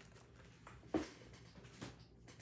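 Quiet handling of cellophane-wrapped craft supplies as they are cleared from a cutting mat: a light tap about halfway through and a softer one near the end.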